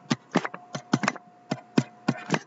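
Stylus clicking and tapping on a tablet screen during handwriting. It makes a run of irregular sharp clicks, about eight in two seconds.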